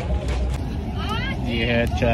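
A man's voice speaking over a steady low rumble of street traffic.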